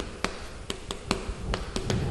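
Chalk writing on a chalkboard: a quick, irregular series of sharp taps as the chalk strikes and moves across the board.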